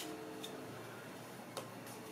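Tarot deck being shuffled by hand: a few faint, irregular clicks of cards slipping against each other.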